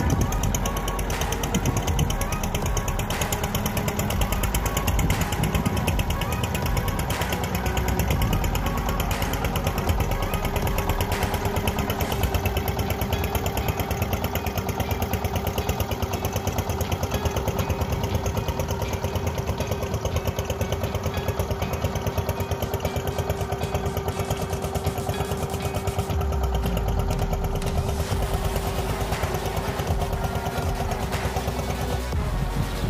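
Wooden fishing boat's engine running steadily under way, with a rapid, even chugging.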